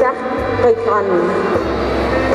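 A woman's voice amplified through a public-address system, with music coming in under it toward the end.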